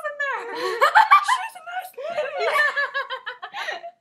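Several young women laughing together, with a run of quick giggles in the second half.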